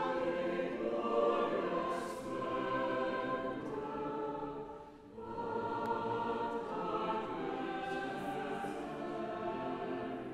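Church choir singing, with a brief break between phrases about halfway through.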